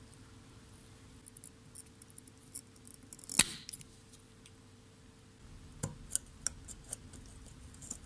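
Desoldering on a small motor's circuit board: scattered faint metallic clicks and clinks of the tools over a faint steady hum, and one sharp snap about halfway through, the spring-loaded solder pump firing to suck away molten solder. A few more clicks follow a little later.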